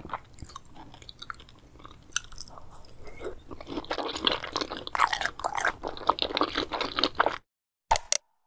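Close-miked chewing and wet mouth sounds of a person eating salmon sashimi, growing louder about halfway through and cutting off abruptly shortly before the end.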